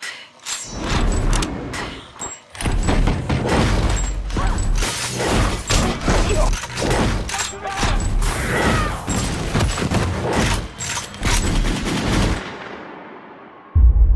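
Dense volleys of gunfire with heavy impacts, building about two and a half seconds in and running hard until, near the end, they give way to a long fading rumble.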